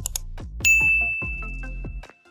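A single bright notification-bell ding sound effect: it strikes about half a second in and rings on as one steady high tone, slowly fading.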